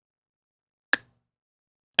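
Silence except for a single sharp click of a computer mouse button about a second in.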